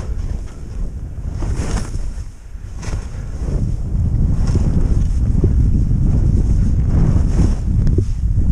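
Wind buffeting a GoPro's microphone as a skier descends through powder, with the hiss of skis turning in soft snow several times. The rushing grows louder about halfway through as speed picks up.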